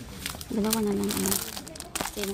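Plastic packaging crinkling as wrapped placemats are handled, with a person's voice holding a fairly steady note for about a second in the middle.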